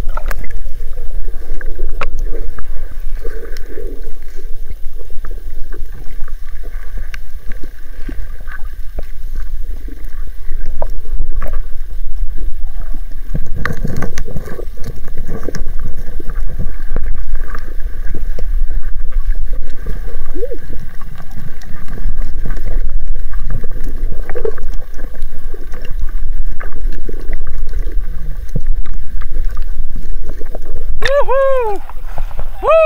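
Muffled underwater sound from a submerged camera: a steady low rumble of water moving against it, with scattered clicks and bubbling and a faint steady hum throughout.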